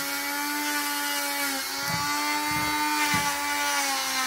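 Corded Dremel rotary tool with a grinding stone running at a steady whine while grinding a dog's nails. Its pitch dips slightly about one and a half seconds in and again near the end.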